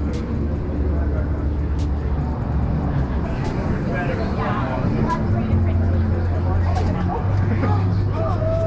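Busy city street ambience: a steady low traffic rumble with voices of people nearby.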